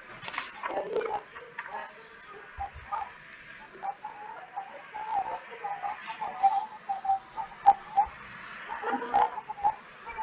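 A bird chirping in short, irregular calls, heard through a video call's compressed audio, with a few scattered clicks.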